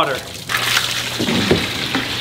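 Water from a garden hose pouring steadily into an empty turtle tub, splashing as it begins to fill.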